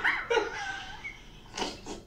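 A bully-breed dog vocalizing: a sudden whining cry that wavers and falls in pitch over about a second, then a short breathy huff near the end.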